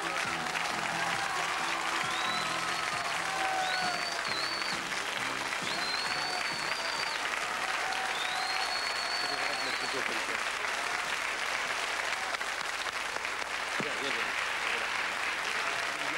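Studio audience applauding steadily throughout, with a few high whistle-like tones in the first half. The end of the band's music fades out in the first second.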